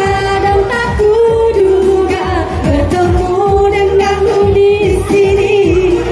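Women singing into handheld microphones over loud backing music with a steady low accompaniment.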